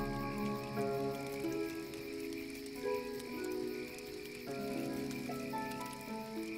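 Slow, soft lyre melody of long held notes, a new note every second or so.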